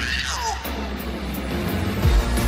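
Live band playing an up-tempo rock-and-soul song. A girl's sung yell slides down in pitch in the first half second, then the band carries on without vocals.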